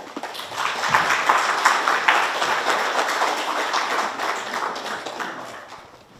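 Audience applauding, building over the first second and fading away toward the end.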